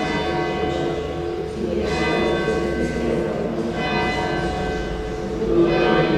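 Church bells ringing, a new stroke about every two seconds, each leaving a cluster of lingering tones that slowly fade.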